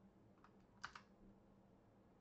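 A few faint computer keyboard clicks over near silence: a light tap about half a second in, then two quick taps just under a second in.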